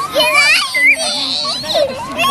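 Young girls laughing and squealing as they play, high children's voices rising and falling, with a long high squeal about a second in.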